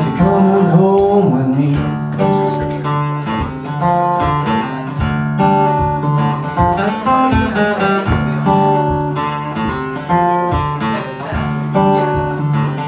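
Steel-string acoustic guitar played live in an instrumental break of a blues song: rhythmic strumming mixed with picked melody notes.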